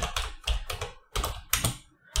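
Typing on a computer keyboard: a short run of sharp keystroke clicks in small quick groups with brief pauses between them, as one word is typed.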